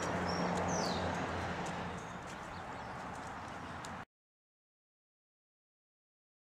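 Steady outdoor background hiss with a few short, high bird chirps in the first second; it grows quieter about two seconds in, and the sound cuts off to dead silence just after four seconds.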